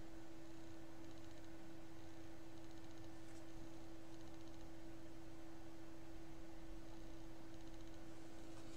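A faint steady hum at one unchanging pitch over low background hiss.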